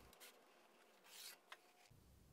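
Near silence, with two short, faint scratches of a pencil drawn along a straightedge on plywood and a small tick about three quarters of the way through.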